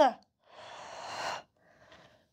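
A woman's long, breathy, unvoiced breath of about a second, growing a little louder before it stops, taken with effort mid-repetition of an abdominal exercise; a fainter breath follows near the end.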